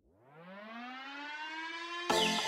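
A siren-like wail winding up: one tone that rises in pitch and grows louder over about the first second, then holds steady.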